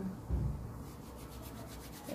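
Fingers rubbing and pulling at locs of hair while a loc is worked through at the root: a quick run of fine rasping strokes in the first second and a dull low bump shortly after the start, then a soft steady rustle.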